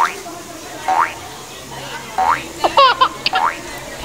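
Cartoon boing sound effects edited over the footage: a short springy rising tone repeated about once a second, then a quick cluster of jaunty comic tones near the end.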